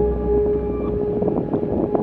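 A single sustained drone note of ambient background music, held steady over a low rumble and an even noisy hiss.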